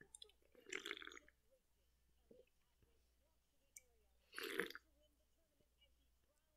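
Two short gulps from a person drinking from a can: one about a second in, and a louder one about four and a half seconds in.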